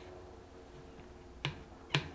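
Silicone spatula stirring a liquid chocolate mixture in a stainless steel bowl, with two sharp clicks about half a second apart near the end as it knocks against the bowl.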